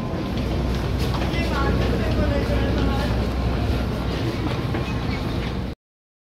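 Commuter train standing at a platform with its doors open: a steady low hum with passengers' voices as people step off. The sound cuts off suddenly near the end.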